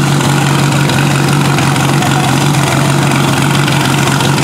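Portable fire pump's engine running steadily with a constant hum while it pumps water through the attack hoses.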